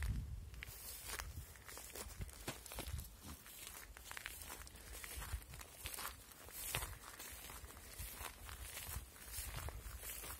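Footsteps crunching on dry grass and stony ground, in an irregular series of short steps.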